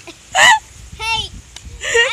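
High-pitched laughter: a sharp, loud burst about half a second in, followed by two shorter laughs.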